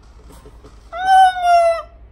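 A person's high-pitched vocal squeal: one sustained, slightly falling note of about a second, starting about a second in.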